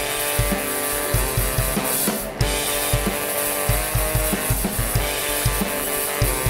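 Live band playing a song: two saxophones over a drum kit with a steady kick-drum beat, with a brief break in the sound a little over two seconds in.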